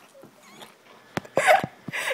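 A person gagging with a mouthful of marshmallows. Faint throaty noises lead up to one short, rough retching burst about a second and a half in.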